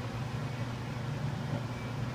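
Steady low mechanical hum.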